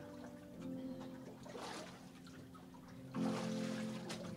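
Soft sustained keyboard chords, with water sloshing and splashing in a baptismal pool, loudest near the end.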